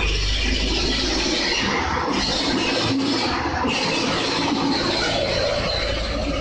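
Old farm tractor's engine running steadily, a low drone under a lot of rough noise.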